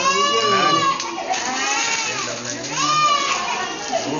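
A high-pitched voice crying out in long, drawn-out wails that rise and fall, several in a row, like a child crying.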